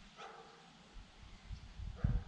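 A single short dog bark about a quarter second in, faint against quiet ambience. Low rumbling noise builds from about a second and a half in and is the loudest sound by the end.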